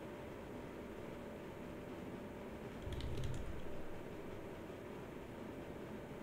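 A quick run of three or four computer keyboard keystrokes, with a low thump, about halfway through over faint room hiss. The keystrokes enter a new ticker symbol into the trading software.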